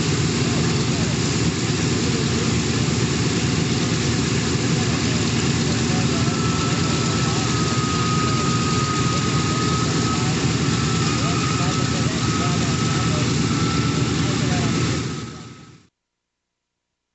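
Steady drone of a B-17 Flying Fortress's four radial piston engines, cutting in abruptly and fading out near the end.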